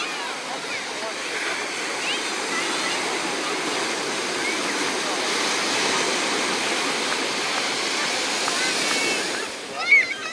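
Ocean surf washing onto a sandy beach, a steady rush that swells to its loudest from about six to nine seconds in as a wave breaks along the shore, then eases. People's voices come through now and then.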